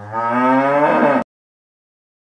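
A cow mooing: one long moo that swells louder just after the start, rises and then falls in pitch, and cuts off suddenly a little over a second in.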